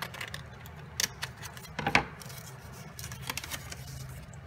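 Scissors snipping through glued layers of paper in a few separate cuts, the loudest about two seconds in.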